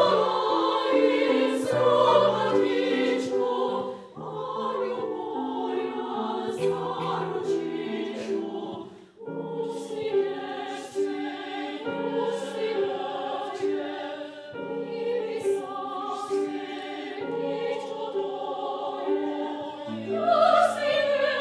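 A women's vocal ensemble singing a classical piece together, with a short break about nine seconds in.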